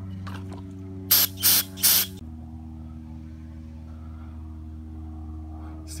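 Three short, loud hissing sprays in quick succession, over a steady low hum.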